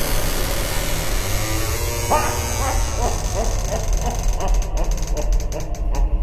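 Spooky title-intro sound effects: a low rumble under a hissing wash. About two seconds in a string of short, rising, voice-like calls begins, a little over two a second and fading, with a burst of rapid clicks near the end.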